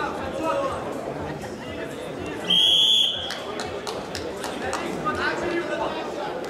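Arena timing buzzer sounding once, a steady high tone lasting about half a second, marking the end of the first period of a wrestling bout. Voices and shouts in a large hall carry on around it.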